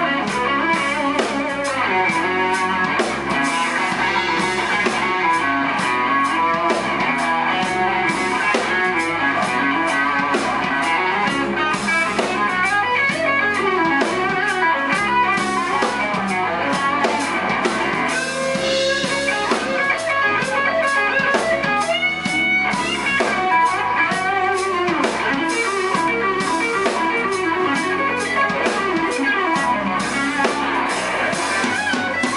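Live blues band playing: electric guitars over a drum kit, at a steady level with no pauses.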